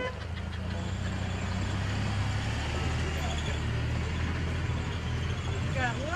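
A motor vehicle's engine running steadily: a low, even rumble.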